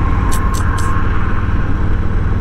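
2019 Harley-Davidson Low Rider's Milwaukee-Eight V-twin running steadily at road speed, a deep even rumble heard from the saddle with wind rushing over the microphone. Three brief high hisses come close together around half a second in.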